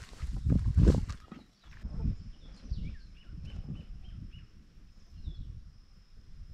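Footsteps on a concrete path with the camera jostling, loudest in the first second. From about a second and a half in, a thin steady high tone sounds, and a bird gives a run of about five short chirps near the middle.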